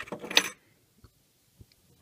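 Metal 9 mm cartridge casings clinking against each other as they are picked through by hand. A few sharp clinks come in the first half second, then only a couple of faint ticks.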